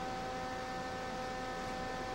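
Steady electrical hum with a couple of high, unwavering whining tones over a constant hiss, with no drum strokes.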